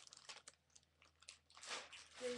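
Faint crinkling and clicking as pipe cleaners are handled and picked out, a quick run of small crackles at first, then a few scattered ticks and a short rustle near the end.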